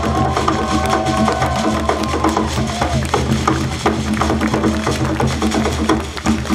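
Live Ugandan drum music: hand drums playing a fast, dense rhythm over a steady low bass, with a held high melodic line that slides in pitch through the first half.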